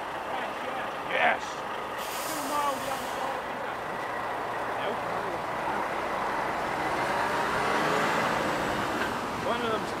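Articulated lorry pulling away slowly, with a short hiss of air from its air brakes about two seconds in. This is followed by a line of cars driving past, their tyre and engine noise building to a peak near the end.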